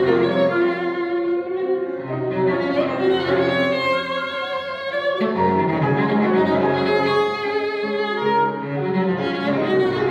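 Cello and Steinway grand piano playing a classical sonata together: the cello bows long held notes over the piano's chords.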